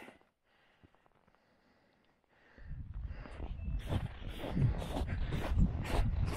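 Near silence for the first two and a half seconds, then footsteps crunching through snow on lake ice, a step every third of a second or so, over a low rumble on the microphone.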